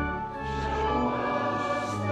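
Church music: a choir singing sustained chords over a low held accompaniment, the harmony shifting a couple of times.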